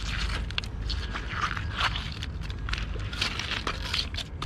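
Pebbles and shingle clicking and scraping as a hand picks through them and boots shift on the stones: many small irregular clicks over a low, steady rumble.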